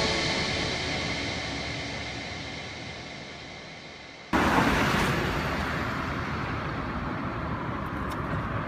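The tail of the background music dies away into a fading hiss. About four seconds in it switches abruptly to steady road traffic noise.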